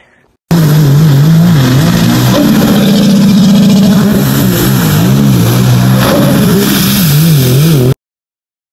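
Sea-Doo Trixx 3-up personal watercraft, fitted with a Riva Racing waterbox and a cold air intake, running under way on the water. It starts abruptly about half a second in and is very loud, its engine note rising and falling over and over as the throttle and load change.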